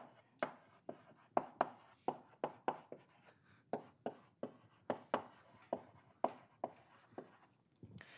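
Chalk writing on a blackboard: a run of short, sharp taps and scrapes at an irregular pace as words are chalked, stopping near the end.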